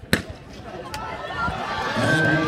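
Starting pistol firing once to start a sprint race, a single sharp crack, followed by spectators' voices and cheering that grow steadily louder.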